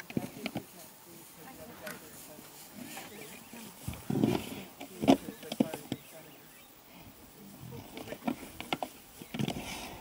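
Two African buffalo bulls fighting. Irregular sharp knocks come as their horns and heavy horn bosses clash, the loudest about five seconds in, with low animal grunts among them.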